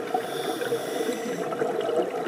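Underwater sound of a scuba diver's regulator breathing: a hiss in the first half over bubbling, crackly water noise.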